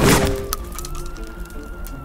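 A single pump-action shotgun shot right at the start, its blast fading over about half a second, with background music running under it.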